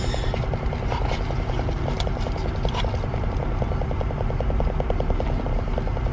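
Car engine idling, heard from inside the cabin: a steady low rumble with a rapid, even pulse. Light rustle and tick of a cardboard package being handled over it.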